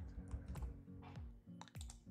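A handful of quick computer keyboard keystrokes and clicks, irregularly spaced, as text in a form field is deleted and Save is clicked. Faint background music runs underneath.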